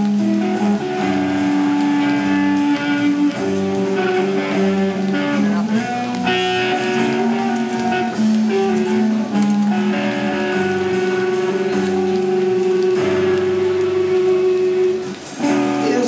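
Live hard rock band led by an electric guitar played loud through a Marshall amp stack, with many long sustained notes. The music dips briefly near the end.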